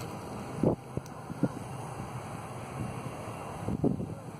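Wind buffeting the microphone as a steady rumbling hiss, with a few brief, louder gusts, the strongest a little under a second in and again near the end.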